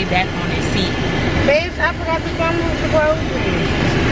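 Car cabin noise: a steady low rumble from the moving car. A person's voice talks briefly in the middle.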